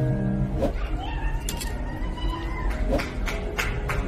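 A live wedding song with a singer and acoustic guitar, with held notes and a few sliding notes. From about three seconds in, hand claps begin at a steady pace as the song ends.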